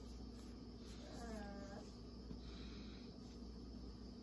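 Quiet room tone with a steady low hum, and a faint, short voiced 'mm' from a woman a little over a second in as she smells a lotion.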